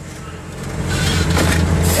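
Straight-piped Cummins L10 diesel engine of a Leyland truck pulling, heard from inside the cab: a low, steady drone that grows louder from about half a second in.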